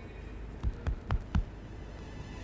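Four soft, low thumps in quick succession, a hand patting a man's shoulder, over a faint steady hum.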